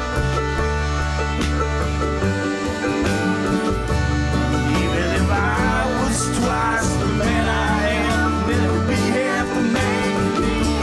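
Live country-style band playing an instrumental passage between verses: acoustic and electric guitars over upright bass, with a wavering lead melody line coming in about halfway through.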